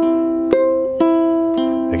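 Ukulele fingerpicked on a C chord, single strings plucked one after another about twice a second in a slow arpeggio pattern, each note ringing on into the next.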